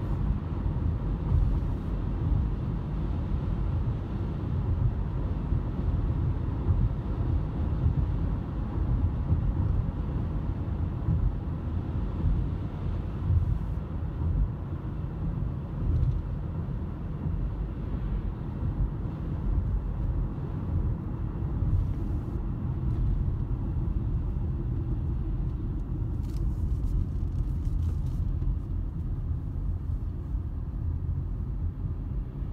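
Steady low road and engine rumble of a moving car, heard inside its cabin. A few light clicks come near the end.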